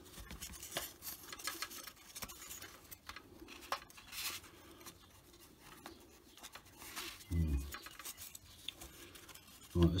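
Light clicks, taps and rubbing of balsa and plywood model-aircraft parts being handled and test-fitted by hand, with a short murmured hum from a voice a little after seven seconds.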